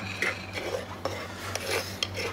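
A utensil scraping and knocking against the inside of an earthenware mortar in several uneven strokes a second, as crushed chili sauce is scraped out into a bowl.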